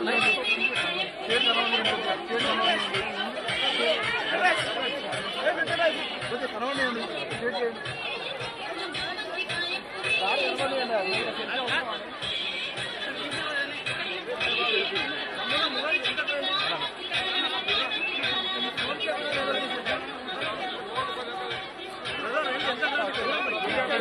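Dense crowd chatter: many voices talking and calling out at once, with no pause.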